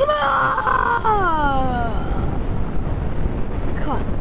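A cartoon creature's high-pitched yell that slides down in pitch and dies away about two seconds in, over a steady loud noise.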